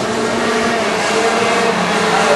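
Pack of Rotax Junior Max 125cc two-stroke racing karts running at speed on the circuit: a steady, buzzing engine drone whose pitch dips a little near the end.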